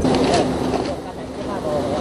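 Fault warning alarm of a derailed Taiwan Railway Tze-Chiang express train, a steady low buzzing tone over a noisy background: the train's fault alert after striking a mudslide.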